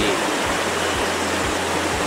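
Steady rush of water from a shallow rocky stream running over stones in white-water rapids.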